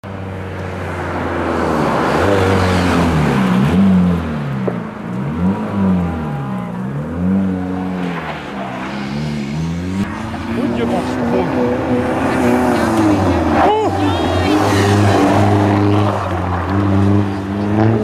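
Skoda Fabia rally car's engine being driven hard, its revs rising and falling several times, then held high and steady. A short tyre squeal comes a little past the middle.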